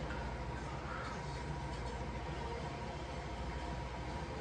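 Steady low room noise with a faint constant hum; no distinct events.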